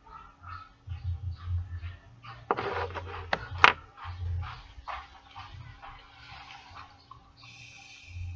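A man vaping: a noisy breath out about two and a half seconds in, two sharp clicks just after, and a hissing draw on an e-cigarette near the end.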